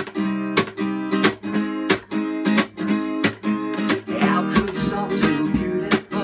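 Acoustic guitar strummed in a steady rhythm, each stroke followed by the chord ringing on.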